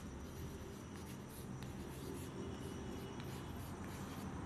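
Chalk scratching on a blackboard as a word is written by hand, with short strokes and light taps, over a low steady room hum.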